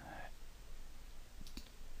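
A faint computer mouse click about one and a half seconds in, over quiet room tone.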